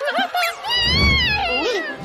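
A cartoon cat character's vocal cat call: a few short meows, then one long call that rises and falls in pitch, ending in lower sliding cries.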